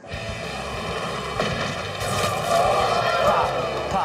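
Rough home-video outdoor sound: a steady rumbling noise with a faint hum and faint voices, getting louder about halfway through.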